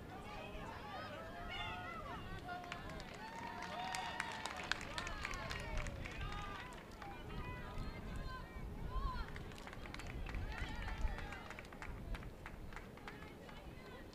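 Shouts and calls from soccer players and coaches across the field, with scattered sharp knocks and a steady low rumble underneath.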